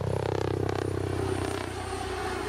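Sikorsky RAH-66 Comanche helicopter in flight, its five-blade main rotor giving a steady whirr rather than the usual chop, with a faint high whine over it. The sound comes in suddenly at the start.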